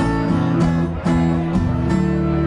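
Live band playing: strummed electric guitar chords over bass guitar. The deepest bass notes drop out near the end.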